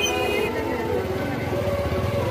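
Small motorcycle engines running at walking pace close by, a steady low putter, under the voices of a marching crowd.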